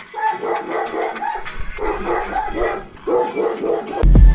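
A dog barking in quick runs of short barks, with a few brief gaps between the runs.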